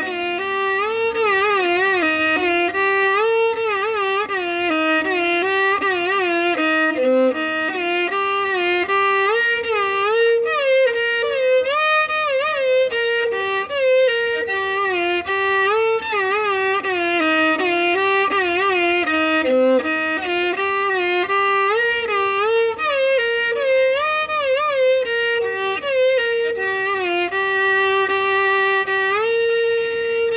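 Solo violin playing a Carnatic melody: bowed notes with oscillating pitch ornaments (gamakas) and slides between notes, settling on a long held note near the end.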